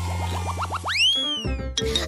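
Cartoon transition sound effect over background music: a quick run of short upward pitch sweeps, then one longer tone that shoots up and slides back down, over a held low bass note that stops about a second in.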